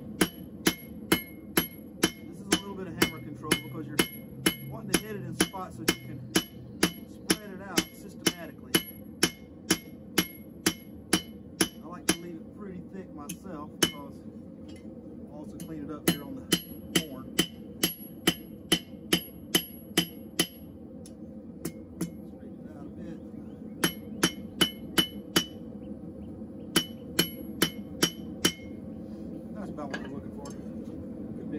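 Blacksmith's hand hammer striking hot steel on an anvil, about two blows a second with a bright ring on each, in runs broken by short pauses: flattening out the tapered end of a bar.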